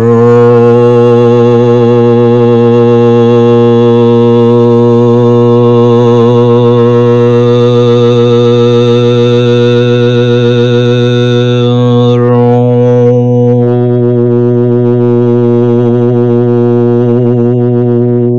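A man's voice chanting the seed syllable "ro" as one long, low, steady held note. The vowel colour shifts slightly about twelve seconds in.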